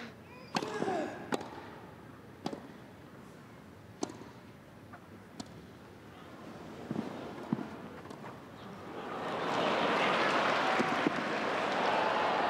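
Tennis ball struck back and forth in a rally on a grass court, a sharp pop every second or so, then the crowd's applause and cheering swelling from about nine seconds in.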